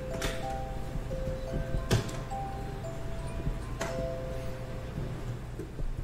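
Vintage turbo revolving color projector for aluminum Christmas trees playing its built-in music: a slow tune of single held notes. A few sharp clicks come through, the loudest about two seconds in.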